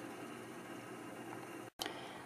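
Faint, steady hiss of room tone, with a brief moment of total silence near the end.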